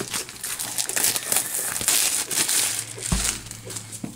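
Thin plastic shrink-wrap crinkling and crackling as it is pulled off a product box by hand, with a low thump about three seconds in.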